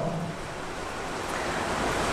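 Steady rushing background noise with no speech, dipping just after the start and then growing slightly louder toward the end.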